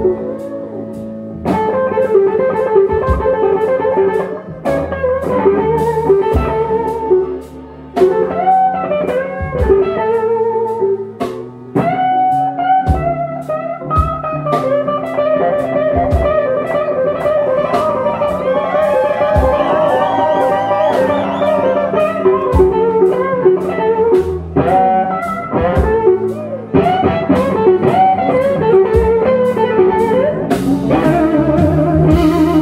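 Live electric blues band playing a slow blues: a lead electric guitar solo full of string bends and vibrato over bass and drums.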